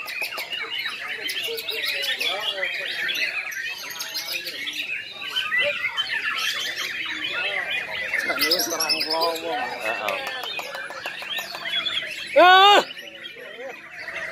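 Many caged white-rumped shamas (murai batu) singing at once in a dense, overlapping stream of chirps, trills and warbles. Near the end a person gives one short, loud shout that rises in pitch.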